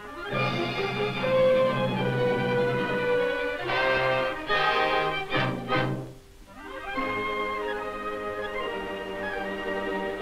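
Orchestral music with strings playing sustained notes. It dips briefly about six seconds in, then resumes.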